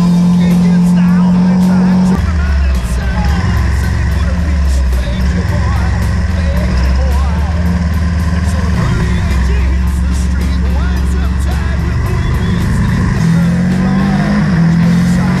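KTM 1290 Super Duke R's V-twin engine heard from onboard at track speed, with wind rush. Its note is held high at first, drops to a lower note about two seconds in, and climbs back near the end.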